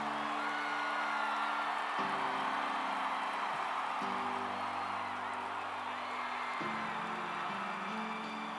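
Slow, held keyboard chords that change about every two seconds, under a crowd cheering and whistling.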